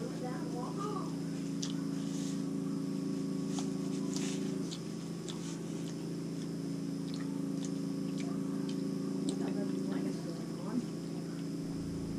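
A steady low hum of several tones from an appliance in a small room, with faint scattered clicks and rustles of hands handling a paper napkin.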